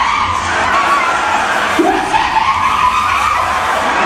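Several drawn-out, wavering vocal cries over loud crowd noise.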